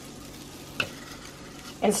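Chaffle batter sizzling steadily on the hot plates of a waffle maker as it is spooned in, with one short tick a little under halfway through.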